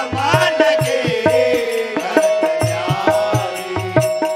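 Devotional bhajan music: a voice singing over a held sustained instrument tone and a steady, quick hand-drum beat.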